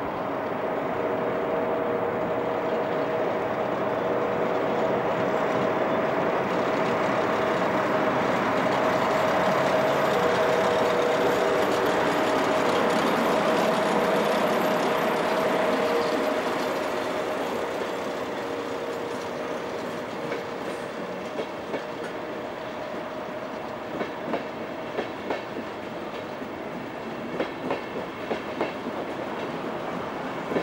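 DB class 103 electric locomotive departing with its Intercity train. A steady whine over the rolling noise grows loudest as the locomotive passes close by, then fades. Its coaches follow, their wheels clacking irregularly over rail joints and points near the end.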